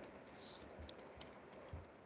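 Faint keystrokes on a computer keyboard: an irregular scatter of light clicks as words are typed.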